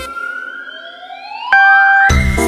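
A break in the background music filled by a rising, whistle-like pitch sweep. About one and a half seconds in, a loud held tone joins it.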